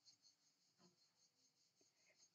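Near silence: room tone, with a faint brief rustle of yarn and crocheted fabric being handled about halfway through.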